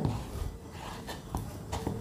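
Hands kneading soft bread-and-milk dough in a ceramic bowl: faint rubbing with a few light taps against the bowl.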